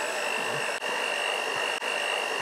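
Electric hand mixer motor running at one steady speed, giving an even high whine over a whirring hiss.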